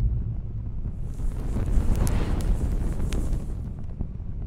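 Cinematic logo sound effect: a deep, rumbling wind-like whoosh. A brighter hiss swells in the middle of it, with a few sharp high glints, before it fades.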